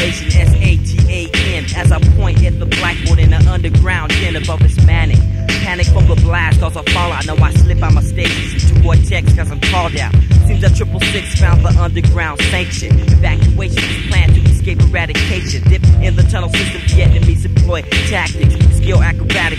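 Hip hop music: rapped vocals over a beat with a heavy, steady bass and drum pattern.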